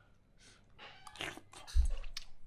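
Close-up eating sounds as a meatball is taken from a spoon: soft sipping and chewing mouth noises. A single dull low thump comes near the end.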